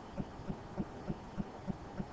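Soft low thuds repeating evenly, about three a second, over faint room hum.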